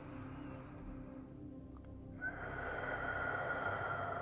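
Soft, steady synth-pad background music. About two seconds in, a hissing noise layer swells up under it, with a faint high tone that drifts slightly downward.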